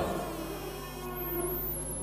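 Faint, steady background music held as a soft sustained drone over a low electrical hum, heard in a pause between spoken phrases.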